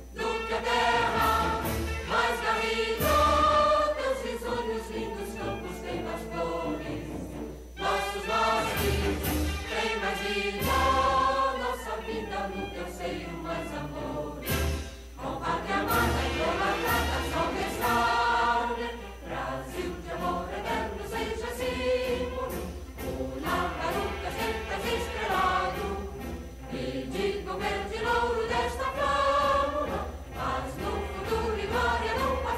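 An anthem sung by a choir with orchestral accompaniment, played from a recording, with long held sung notes.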